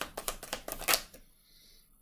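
Tarot deck being shuffled by hand: a quick run of crisp card flicks for about a second, ending in a sharper snap, then it stops.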